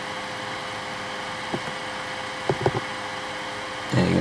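Steady background hum with one constant tone, the noise of a computer and its recording setup, with a few short soft clicks in the middle as the mouse is clicked.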